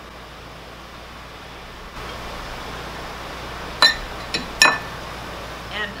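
Dishware clinking as chopped jicama is scraped from a small ceramic ramekin into a glass mixing bowl. Two sharp, ringing clinks and a fainter one come close together about four seconds in, over a steady faint hiss.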